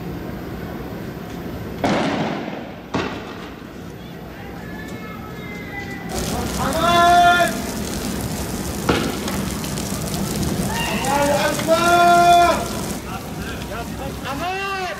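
Men shouting in long, loud calls over street noise, loudest about seven and twelve seconds in. Three sharp bangs cut through, two near the start and one about nine seconds in.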